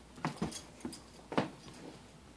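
A dog and a cat play-fighting on carpet: a handful of short, sharp scuffling sounds, the loudest about one and a half seconds in.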